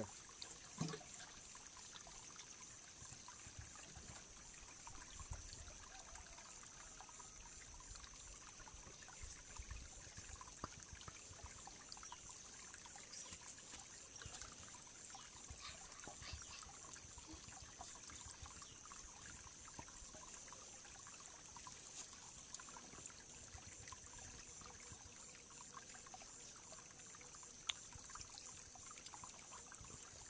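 Water gurgling and trickling faintly into a plastic jerrycan held under the surface of a shallow muddy pool to fill it.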